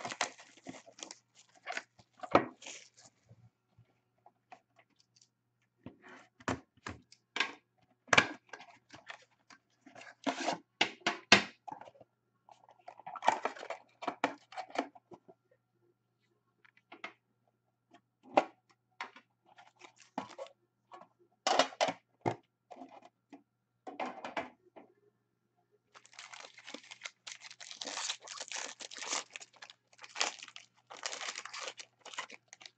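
Hands handling Upper Deck Premier hockey card boxes and their packaging: scattered knocks and taps as the metal box tins are moved and stacked. Near the end comes a steady crinkling of plastic wrap being torn.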